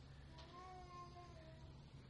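Near silence: faint room tone, with a faint, slightly wavering high tone lasting about a second in the middle.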